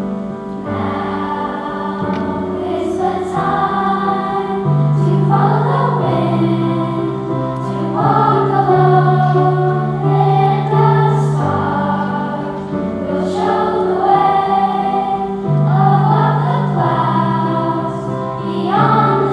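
Children's choir singing a song in unison with piano accompaniment, the piano holding sustained low notes under the voices.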